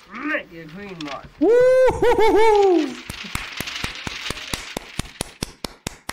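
A man's loud, drawn-out vocal cry, then hand clapping, about five claps a second, through the last three seconds.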